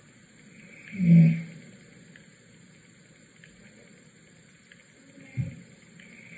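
A short, loud, low muffled vocal sound about a second in, then a brief low thump near the end, over a steady faint hiss.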